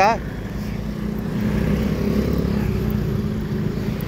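Street traffic: a motor vehicle's engine running close by, a steady low drone whose pitch rises a little around the middle.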